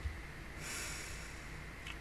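A woman breathing out audibly close to the microphone: one soft, airy breath lasting about a second.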